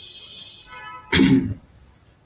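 A man clears his throat with a short cough about a second in. Before it, a faint high tone slides down in pitch.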